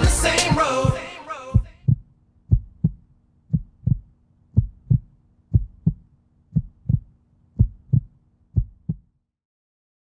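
Music fades out in the first couple of seconds, then a heartbeat sound effect: eight paired low thumps (lub-dub), about one beat a second, over a faint steady hum, stopping shortly before the end.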